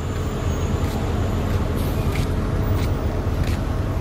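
City bus running close by: a steady low engine rumble.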